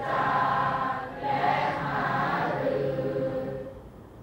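A group of voices reciting Thai verse together in a sing-song chanting melody, in two held phrases with a brief break about a second in, fading near the end.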